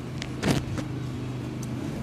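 A steady low mechanical hum, like a running motor, with one short loud knock about half a second in.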